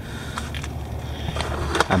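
A steady low rumble with a few faint scrapes and clicks; a voice begins right at the end.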